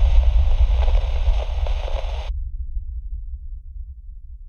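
Deep rumbling tail of an explosion fading away. The higher hiss cuts off suddenly a little over two seconds in, leaving a low rumble that dies down.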